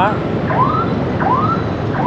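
Dense city traffic of motorbikes, cars and a bus, a steady rumble of engines and tyres, with two short rising tones a little under a second apart.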